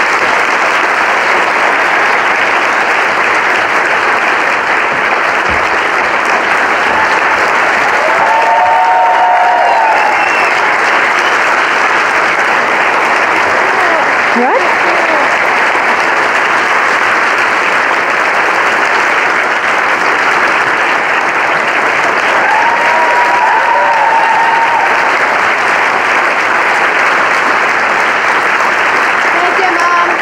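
Audience applauding steadily, with brief cheers rising above it twice.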